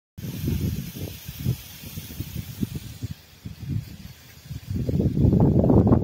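Gusty wind buffeting the phone's microphone, with low rumbling gusts that grow much stronger near the end, over a faint high hiss in the first half.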